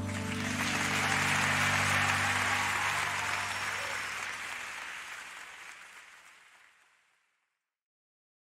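Live audience applauding at the end of a worship song as the band's last held chord dies away. The applause swells and then fades out to silence near the end.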